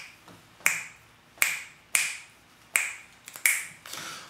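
Fingers snapping a steady beat, about one snap every three-quarters of a second, keeping time through an empty bar left for listeners to echo the sung line.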